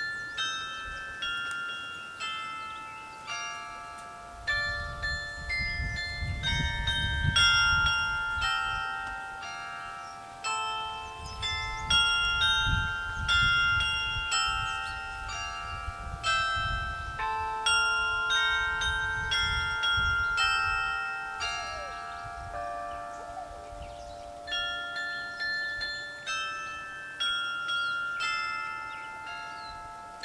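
Mobile carillon of cast bronze Eijsbouts bells, played by hand from its keyboard. A melody of struck bell notes sounds in several voices, each note ringing on and overlapping the next.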